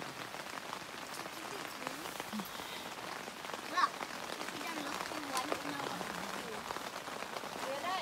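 Light rain on tent fabric: a steady hiss dotted with small drop ticks.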